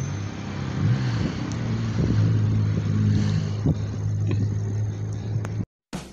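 A motor vehicle engine running steadily, with a brief dip and rise in pitch about a second in. The sound cuts off abruptly just before the end.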